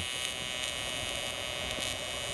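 AC TIG welding arc on aluminum buzzing steadily.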